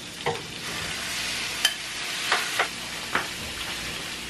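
Seasoned ground meat frying in a square copper-coloured frying pan, a steady sizzle, with several sharp scrapes and taps of a spatula against the pan as the meat is spread out.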